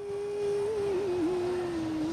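A woman's unaccompanied voice holding one long sung note, wavering slightly and sinking a little in pitch, as the lead-in to a Hindi film song.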